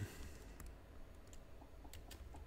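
A few faint, scattered clicks from the computer used to write on the screen, over a low steady hum.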